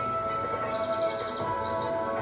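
Calm music with long held notes, overlaid with high bird chirps, including a fast trill about halfway through: the soundtrack of the Samsung Q950R's 8K retail demo reel.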